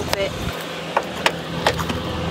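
Hand ratchet wrench loosening a long suspension bolt in a car's front wheel well, giving a few separate sharp clicks about a third of a second apart.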